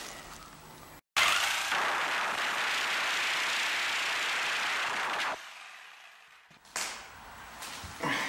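Corded power tool cutting into an old inch-and-a-quarter steel baseboard heating pipe. It runs loud and steady for about four seconds, then stops, and a short sharp knock follows near the end.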